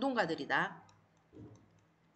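A voice speaking briefly, then a few faint, light clicks of a pen tip tapping on a digitiser tablet as a note is handwritten, with one soft low thump about halfway through.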